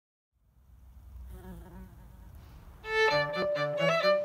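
A faint low background rumble, then a violin and cello duo begin playing a tune together about three seconds in.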